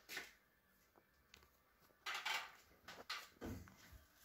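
Light plastic rustling and knocks from handling the hinged front panel and filters of a wall-mounted split air conditioner. The noises are brief and scattered: one at the very start, then several from about two seconds in until near the end.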